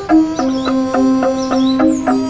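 Angklung music: a melody of repeated, quickly struck pitched notes, with birds chirping high above it.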